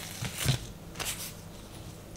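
Thin samosa pastry sheets being peeled apart and laid down on a cloth-covered table: papery rustling and crackling, with a soft thump about half a second in.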